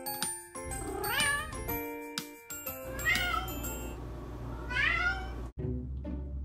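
A domestic cat meowing three times, about a second, three seconds and five seconds in, over intro music.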